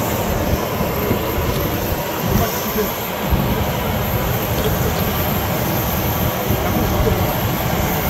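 Steady, loud rumble and hiss of aircraft noise beside a parked airliner on the apron, with people talking in the background.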